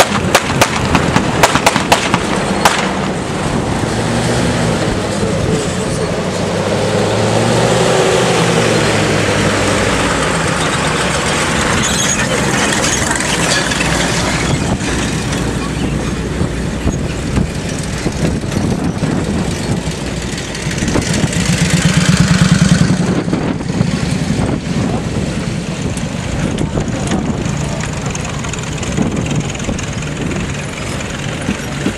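WWII-era military jeeps and a truck driving past close by, one after another. Their engines run at low speed and rise and fall in pitch as each vehicle pulls through and away. There are a few sharp clicks in the first seconds, and the engine sound swells loudest a little over two-thirds of the way through as one vehicle passes nearest.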